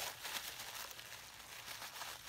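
Faint rustling and crinkling of tissue paper being handled as a gift box is unwrapped.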